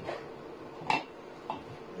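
Kitchenware being handled on a wooden table as a plastic funnel goes into a glass bottle and a stainless steel mixing bowl is lifted: a sharp, briefly ringing clink about a second in, then a smaller click half a second later.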